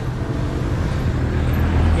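Engine of a small pickup truck running as it drives close past, a low steady hum that deepens and grows stronger in the second half.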